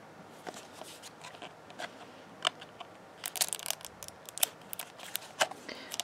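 Plastic wrapping and shell of an LOL Surprise ball crinkling and clicking as fingers pick at its seal. Scattered sharp crackles and clicks come thickest past the middle.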